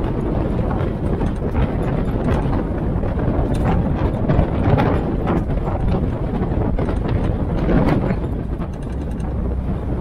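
Open military Jeep driving: its engine runs steadily under wind buffeting the microphone, with frequent short rattles and knocks from the vehicle over the road.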